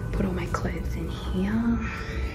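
A woman's voice speaking softly, close to a whisper, with faint background music.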